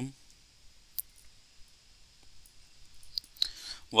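A single sharp computer mouse click about a second in, with a few fainter clicks near the end, over quiet room tone.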